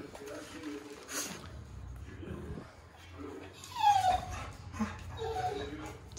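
A dog whines once about four seconds in, a short cry falling in pitch, which the owner puts down to jealousy.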